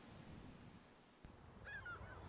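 Near silence, then from about a second in a low wind rumble on the microphone outdoors. Near the end come a few short, faint, distant bird calls.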